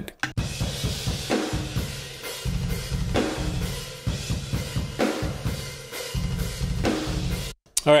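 Room microphones of the GetGood Drums Invasion sampled metal kit played back soloed, heavily compressed with the Smash and Grab compressor and slightly stereo-spread. Snare hits roughly every two seconds with long sustain ride over fast bass-drum runs and cymbals. It cuts off suddenly near the end.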